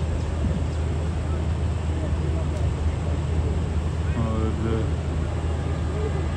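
Steady low drone of a diesel locomotive engine running. A voice is heard briefly about four seconds in.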